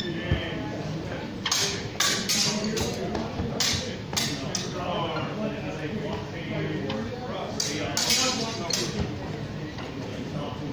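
Steel training longswords clashing in sparring: a quick run of sharp metallic strikes from about a second and a half in to about four and a half seconds, then another cluster of clashes around eight seconds, with voices in the background.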